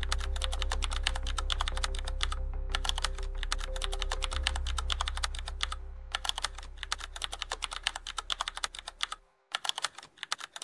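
Rapid computer-keyboard typing clicks, a typing sound effect that breaks off briefly a few times. A low steady hum runs underneath and fades out about nine seconds in.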